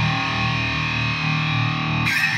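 Electric guitar with PAF-style humbuckers played through a Digitech RP-80 multi-effects pedal on its factory "Stack" preset: a high-gain, stacked-amp distortion tone. Notes and chords are held and ring out steadily.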